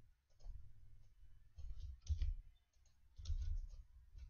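Computer keyboard being typed on in three short bursts of clicks, each a second or so apart.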